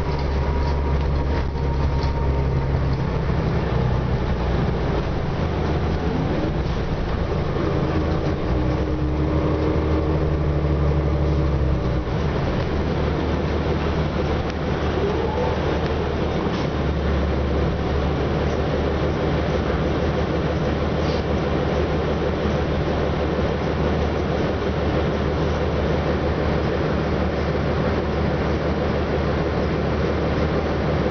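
Orion VII NG diesel city bus heard from inside the cabin: the engine runs with a steady low drone as the bus moves through slow traffic. A short rising whine comes in twice, about a quarter and about halfway through, as it picks up speed.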